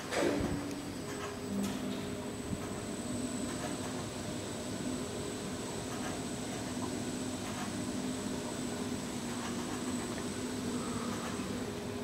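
Steady mechanical hum holding a couple of low tones and a faint high whine, with a short knock right at the start.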